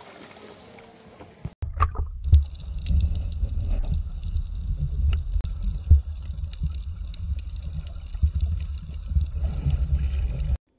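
Underwater sound picked up by a camera submerged with snorkelers: a dense, muffled low rumble of water with scattered clicks and bubbling. It starts suddenly about a second and a half in, after a short stretch of quieter sound from the shallows.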